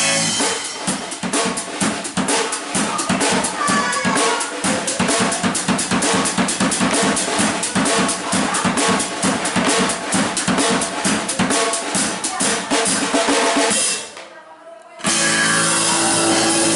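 Live drum kit played in a fast, steady beat of snare and bass drum hits, several a second. It stops abruptly about fourteen seconds in for a break of about a second before loud playing starts again.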